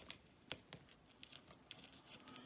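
Faint, scattered small clicks and ticks of fingertips and nails picking at tape and ribbon-cable connectors inside an opened laptop, the sharpest two about half a second in.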